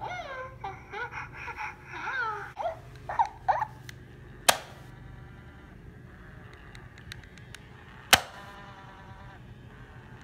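Penguala Hatchimal toy making electronic baby-like chirps and giggles from inside its partly hatched egg, for the first couple of seconds and again near the end. Two sharp knocks come between them, the second the loudest sound.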